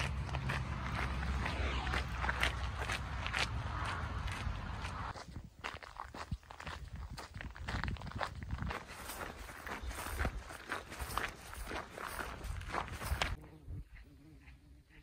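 Footsteps crunching on a gravel path at a steady walking pace, about two steps a second. A low rumble runs under the steps for the first five seconds or so.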